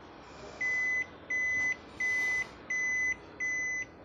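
Toshiba e-Studio copier beeping five times, evenly spaced, in one steady high tone. The beeps are its alarm for service call C260, a fault that the technician traces mostly to the camera (CCD) board.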